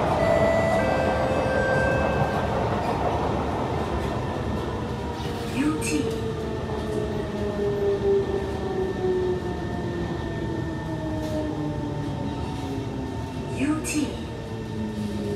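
Kawasaki C151 electric train heard from inside the car as it brakes: the traction motor whine falls steadily in pitch over a low running rumble as the train slows toward a station.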